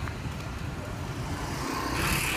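Road traffic on a busy street: motorbikes and cars passing in a steady rumble that grows a little louder toward the end.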